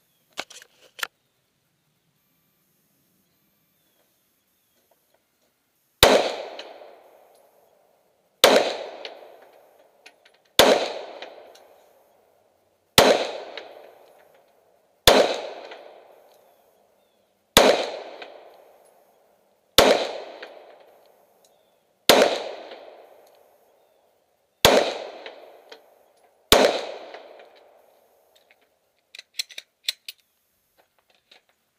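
Ten pistol shots fired one at a time, about two seconds apart, each a sharp crack followed by an echo that dies away over a second or more. A few light clicks come shortly before the first shot.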